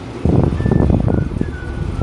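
Air rushing across a phone microphone as a running monoblock air conditioner's suction draws air in through gaps around the window seal: a loud, rough rush that starts about a quarter second in.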